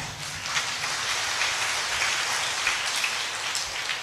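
Audience applauding: many hands clapping in a steady, dense patter.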